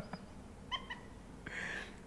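A quiet pause in talk: a short high-pitched vocal squeak a little under a second in, then a brief breathy exhale near the end.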